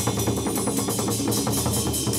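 Chầu văn ritual music played instrumentally, with drums and percussion keeping a fast, dense beat under sustained instrument lines.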